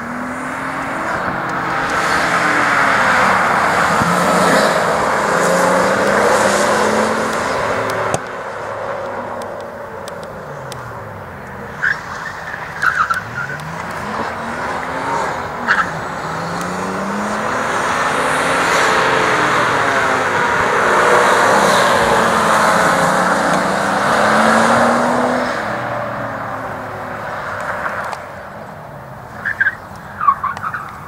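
Nissan R32 Skyline driven hard through an autocross course: the engine revs climb and drop again and again as it accelerates and brakes between turns, with a loud rush of tyres sliding on the tarmac that swells and fades.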